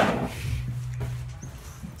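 A metal-frame chair scraping as it is pulled out, then a few faint knocks as it is sat on, over a steady low hum.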